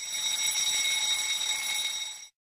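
Countdown timer's alarm ringing at a high pitch for about two seconds, then cutting off suddenly: the signal that the time for the exercise is up.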